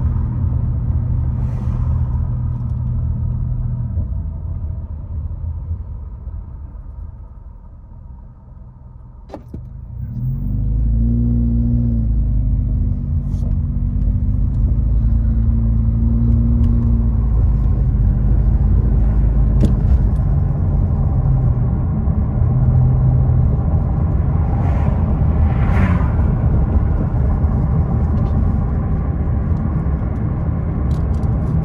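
Car engine and road noise heard from inside the cabin while driving. The noise fades as the car slows almost to a stop, then swells again about ten seconds in as it pulls away, the engine's pitch rising, and it settles into steady cruising rumble.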